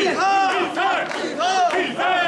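Crowd of mikoshi bearers chanting a rhythmic call in unison as they carry the portable shrine. The loud, many-voiced shouts repeat about twice a second.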